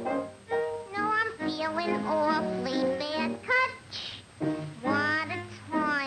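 A cartoon woman's singing voice with musical accompaniment, the held notes wavering in vibrato.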